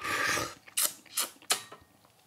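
A person slurps tea from a small porcelain tasting cup, drawing it in with air in a hissing slurp that lasts about half a second. A few short, sharp mouth clicks and smacks follow.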